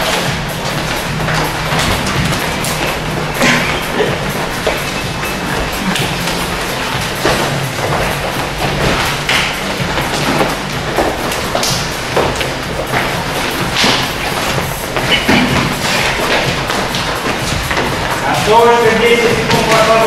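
Background music playing through a busy gym hall, with many scattered thuds and taps from people's footwork and hands during boxing drills. A man's voice comes in near the end.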